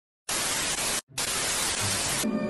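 Television static: a loud, even hiss of white noise. It starts about a quarter second in, drops out for an instant near the one-second mark, then resumes.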